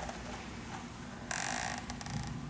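Quiet hall room tone through a handheld microphone, with one short hiss of noise on the microphone about a second and a half in and a couple of faint clicks after it.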